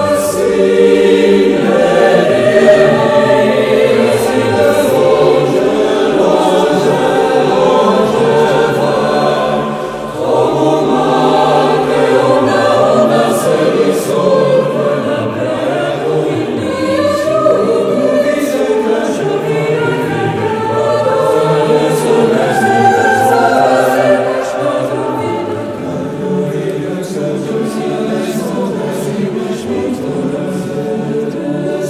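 Mixed chamber choir of women's and men's voices singing a contemporary choral setting of a Portuguese poem, with held, overlapping chords. The singing dips briefly about a third of the way in and is softer in the last few seconds.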